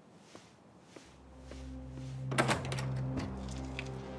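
Soft footsteps at an even pace, then low sustained string music with cello and double bass swells in from about a second in. About two and a half seconds in, a loud clattering thunk at a door cuts across the music.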